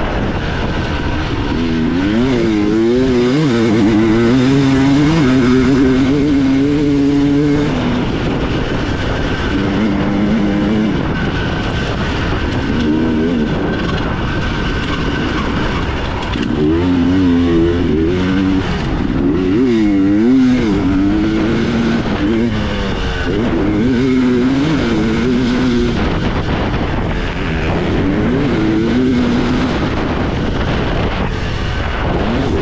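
Two-stroke dirt bike engine racing along, its pitch rising and falling over and over as the throttle is worked and gears are changed, over a steady rush of wind and tyre noise.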